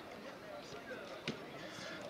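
A football struck once on a training pitch: one sharp thud about a second in, over distant players' voices.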